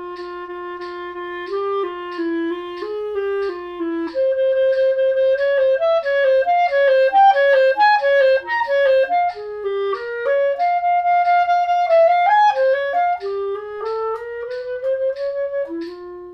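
Solo clarinet playing a slow, lyrical etude passage with each long note re-tongued in even sixteenth-note or six-tuplet pulses, so that held pitches sound as strings of repeated tongued notes. This is the practice technique of articulating the subdivision.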